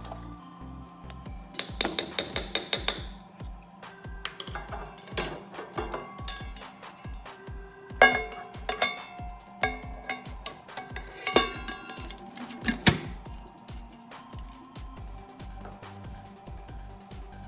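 A utensil clinking and tapping against a stainless steel pot while rice is stirred, with a rapid run of sharp taps about two seconds in. About halfway, a loud ringing clang as the stainless lid is set on the pot, followed by a few more clinks. Background music with a steady beat plays throughout.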